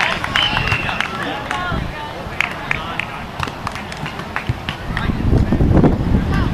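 Players' voices calling out across an outdoor sand volleyball court, with scattered sharp claps and clicks. A low rumble swells near the end.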